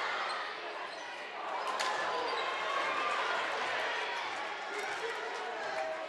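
Gym sound during a basketball game: a basketball bouncing on the hardwood court over the steady murmur of the crowd in the stands.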